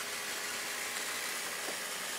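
Small 12-volt electric fuel pump running steadily, circulating fuel from the tank through a filter and water/fuel separator and back into the tank. It makes a quiet, even hiss with a faint steady hum.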